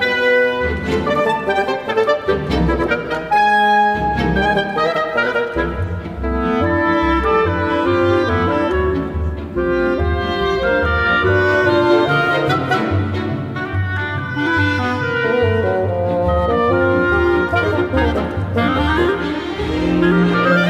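Oboe, clarinet and bassoon playing a busy, continuously moving passage with a string orchestra, over a pulsing low bass line.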